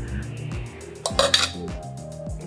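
A spoon scraping and knocking against a stainless steel pot as cooked rice is scooped out, with a sharper clink just after a second in.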